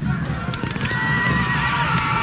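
Cavalry horses neighing, with hoofbeats, over the continuous din of a mock battle.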